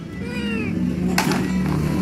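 A single short high cry that rises and then falls, like a meow, over steady background music, with a sharp knock about a second later.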